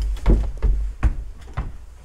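A wooden door pushed open by hand, with a series of short knocks and thumps over a low rumble from handling.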